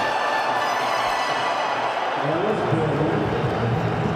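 Stadium crowd noise after a six: a steady din of the crowd with music from the ground's speakers underneath, lower voices or chanting rising out of it a little past halfway.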